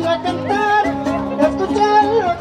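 Son huasteco (huapango) music: a sung voice gliding over violin and strummed guitars, played by a huasteco trio.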